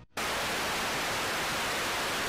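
Steady static hiss like a detuned TV, starting abruptly just after the beginning and holding an even level throughout.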